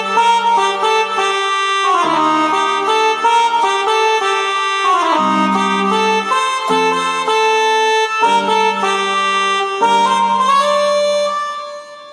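Casio CTK-6300IN electronic keyboard playing a melody in its trumpet tone over held left-hand chords. The chords change every couple of seconds, and the sound fades out near the end.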